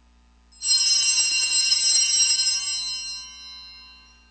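A cluster of altar bells shaken hard, ringing with many high, bright tones over a jingling rattle. It starts suddenly about half a second in, keeps going for about two seconds and then rings out and fades.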